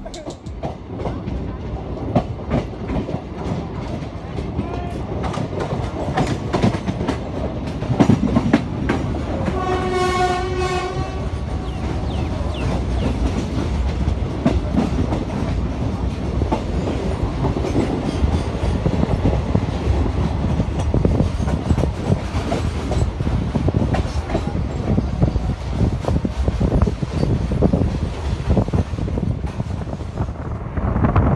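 Moving express train heard from its open coach door: a steady rumble of the wheels with a rapid clickety-clack over rail joints and points. A train horn sounds once, for about a second and a half, about ten seconds in.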